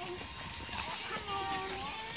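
Faint voices talking in the background, with footsteps on a concrete path.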